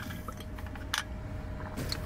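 A person drinking from a large plastic water bottle, with a few small clicks and handling sounds, the clearest about a second in. Under it runs a steady low hum inside a car cabin.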